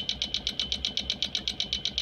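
The clacker's electrical contacts, driven by a reverse-sawtooth waveform, chattering open and shut in an even, rapid run of clicks, about a dozen a second, each click a pulse of current through the electrolysis cell. A thin steady high tone runs under the clicks.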